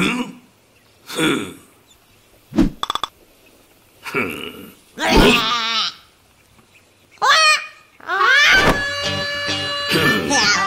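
Cartoon characters' wordless vocal sounds: short grunts and calls with pauses between them, and a brief rapid rattle. Bright music comes in about eight seconds in.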